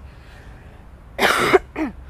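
A person coughing twice: one loud cough just past halfway, then a shorter one right after.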